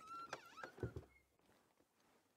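Faint high-pitched squeaky calls of African wild dogs at a kill: a few short whistly notes that slide up and down, over in about a second, then near silence.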